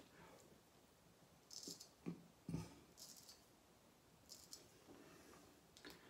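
Faint scraping of a Wade & Butcher 5/8 full hollow straight razor cutting through lathered stubble: three short strokes, with two soft knocks between them.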